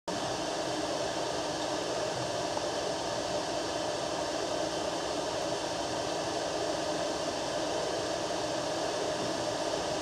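Steady, even room noise of a concert hall: the hiss of its ventilation, with no playing yet.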